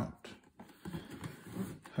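Faint handling of a cardboard box: soft rubbing of the cardboard with a couple of light taps, as the box is worked out of its cover.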